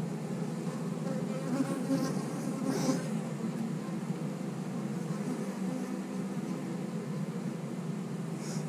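A mass of honey bees buzzing steadily around an opened hive and a bee-covered frame, swelling slightly about two to three seconds in.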